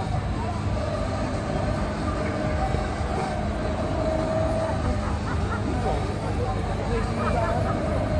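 Fairground din: a steady low mechanical rumble with a faint steady hum, under the chatter of a crowd.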